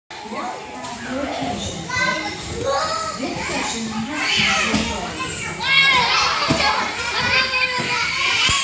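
Many young children playing and calling out at once in a large indoor play hall, their high voices overlapping continuously, with an occasional light knock from the play equipment.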